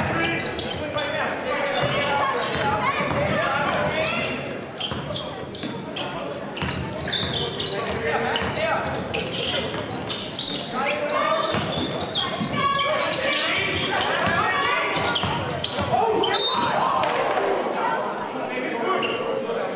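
Live basketball game on a hardwood court in a gymnasium: the ball bouncing as it is dribbled, sneakers squeaking, and players and spectators talking and calling out.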